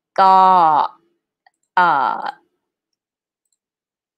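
Two brief spoken syllables, each falling in pitch, about a second and a half apart, with complete silence between and after them.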